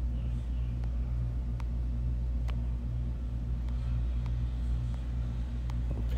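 A steady low mechanical hum, with a few faint clicks.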